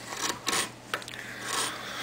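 A Swiss-made wood carving gouge slicing down through hardwood by hand, with a few short scraping cuts and then a longer one near the end.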